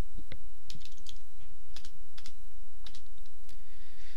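Typing on a computer keyboard: irregular single key clicks and short runs of keystrokes as a file name is entered and Enter is pressed, over a steady low hum.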